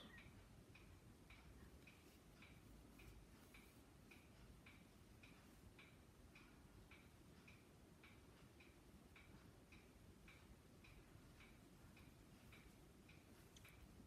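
Near silence with a faint, even ticking, a little under two ticks a second.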